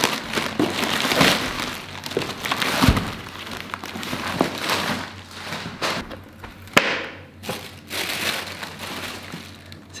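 Black plastic mailer bag crinkling and rustling as it is pulled open, then a cardboard shoebox handled and opened, with paper rustling inside. There is a dull thud about three seconds in and a sharp knock nearly seven seconds in.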